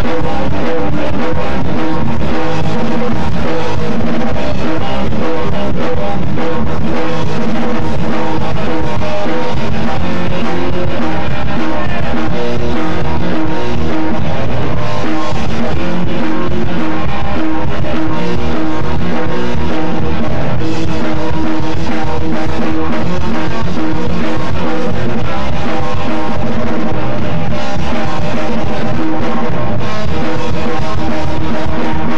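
Rock band playing live, loud and steady: electric guitar, bass and drum kit, the opening of the song just after the count-in.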